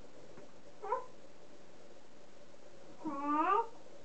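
A toddler's wordless vocal sounds, each rising in pitch: a short one about a second in and a longer one about three seconds in.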